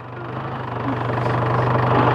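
Jeep engine idling with a steady low hum, while a broader noise over it grows steadily louder through the two seconds.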